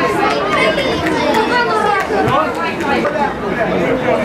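Several men's voices talking and calling out over one another, the shouting of players and coaching staff during a football match.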